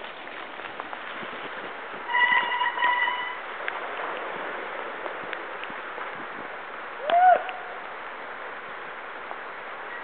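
Steady rush of a swollen creek. A steady high tone sounds for about a second and a half, starting about two seconds in, and a short rising-then-falling call comes about seven seconds in.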